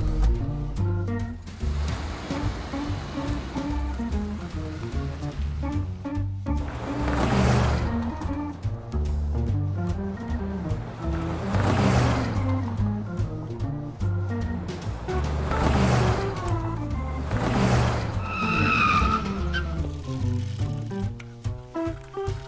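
Background music with car sound effects: several cars driving past, each a swell that rises and falls, and a brief tyre squeal near the end.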